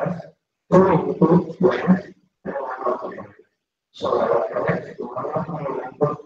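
A voice speaking in short phrases separated by brief pauses, too unclear for the speech recogniser to make out words.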